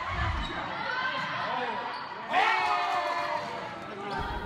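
Live sound of a basketball game in a school gym: the ball bouncing on the hardwood court and players and spectators calling out, with one louder voice about two seconds in.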